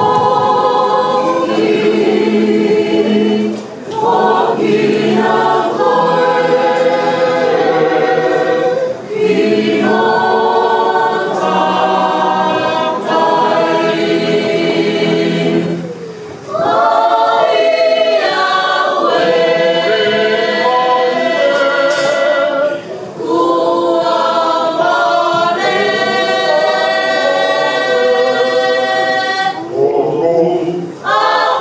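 Church choir singing a Tongan hymn in full held chords, in long phrases with brief pauses for breath between them.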